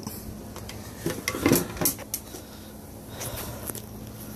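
Light clinks and knocks of a circuit board and metal parts being handled, several about a second or two in, with a few fainter ticks near the end.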